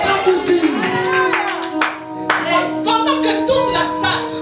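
Worship singing with hand-clapping, long notes held through the second half.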